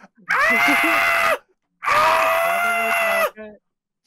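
A man's voice screaming twice in excitement, two long, loud, high-held screams with a short break between them, the second a little longer.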